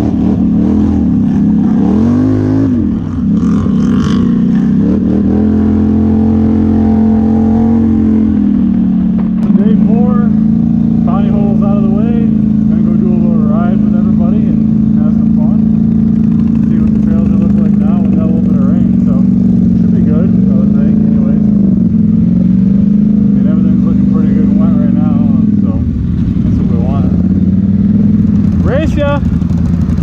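ATV engines running steadily near idle, with a few brief revs, while voices talk faintly in the background.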